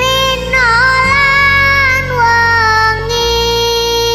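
Sholawat, an Islamic devotional song: a high, young-sounding female voice holds long, ornamented notes with small pitch turns over a steady instrumental backing.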